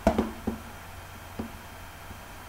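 Three short clicks from a fingertip pressing the plastic top deck of a Samsung Series 5 notebook, above the keyboard near the hinge, where the deck flexes under pressure. A steady low hum runs underneath.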